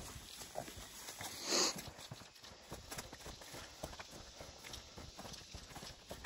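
Footsteps walking along a dry, leaf-littered dirt trail, with irregular soft crunching and rustling. About a second and a half in there is one brief, louder rush of noise.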